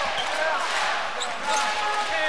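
Basketball game in play in an indoor arena: a steady crowd din with voices, the ball being dribbled on the hardwood court, and a short high sneaker squeak about a second in. A steady held tone comes in about one and a half seconds in.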